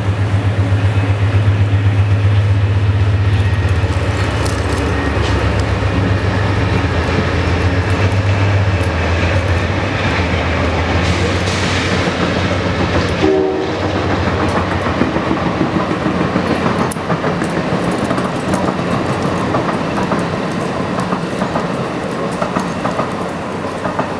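A train passing: a steady low locomotive drone, loudest for the first nine seconds or so and then easing, with rapid clacking of wheels over the rails throughout.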